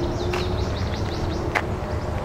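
Birds chirping: a quick run of short, high, falling chirps about half a second in, over a steady low rumble of outdoor background noise.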